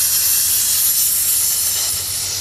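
Steady high hiss of air rushing back into an evacuated vacuum jar as the vacuum is released and the pressure comes back up.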